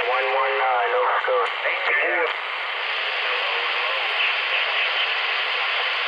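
A distant station's voice comes through a CB radio receiver's speaker, thin and band-limited over static. It breaks off a little over two seconds in, leaving a steady hiss of band noise.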